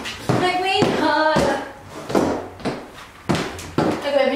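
A voice singing a short drawn-out phrase, followed by about five sharp smacks of a hand over the next two and a half seconds.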